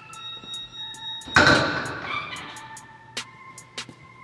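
A metal weight plate clangs onto the loading horn of a plate-loaded chest press machine about a second and a half in, ringing briefly. Background music with a beat plays throughout.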